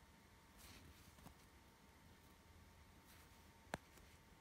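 Near silence: faint rustles of needle and embroidery thread being drawn through etamine cloth, with one short sharp click near the end.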